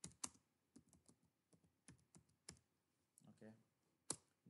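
Faint computer keyboard typing: about a dozen quick, irregularly spaced keystroke clicks.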